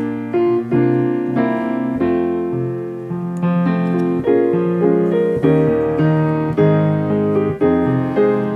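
Piano playing a modulation from the key of F to A-flat: a run of struck chords, each left to ring, passing through a B-flat minor seventh and an E-flat seventh chord to land in the new key.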